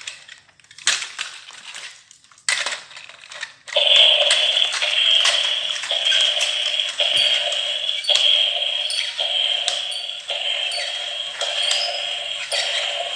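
A few knocks and clicks as a battery-powered walking toy dinosaur is handled and switched on. About four seconds in, its motor and gears start a steady whirring, with a click roughly once a second as it steps.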